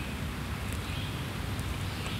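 Steady outdoor background noise with a low rumble, like light wind on the microphone.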